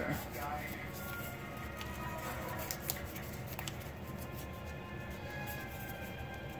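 A television playing in the background, music and voices, with a few crisp clicks and rustles of a sheet of paper being creased and folded by hand.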